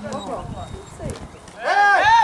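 Shouted calls on a football pitch during play: a few short calls, then one loud, long shout near the end.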